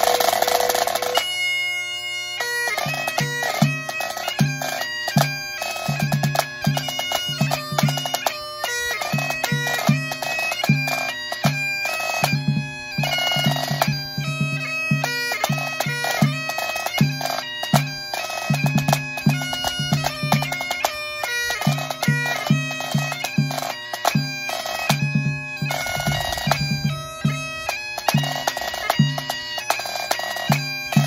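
Great Highland bagpipes playing a 2/4 march. The drones sound first, and the chanter melody comes in about a second later. A pipe-band tenor drum, struck with felt-headed mallets, beats along in time.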